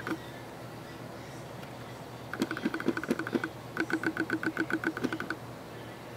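Camera lens autofocus motor, a Sigma 10 mm fisheye on a Canon T1i, driving focus in rapid, even ticking pulses about eight a second. It comes in two bursts of about a second each, starting a couple of seconds in, as the lens hunts for focus on a sneaker sole held close.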